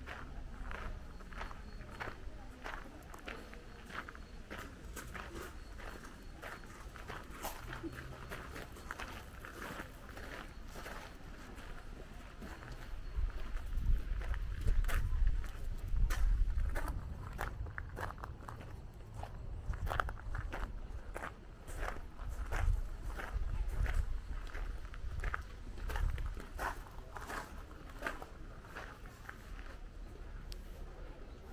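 Footsteps of a person walking at an even pace, about two steps a second, with a low rumble that swells through the middle of the stretch.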